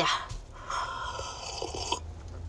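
A person sipping warm water from a glass jar, a drawn-in sip lasting just over a second that begins a little under a second in.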